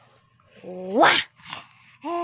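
A short vocal whine that rises steeply in pitch about a second in and ends in a breathy burst, followed by a fainter breathy sound.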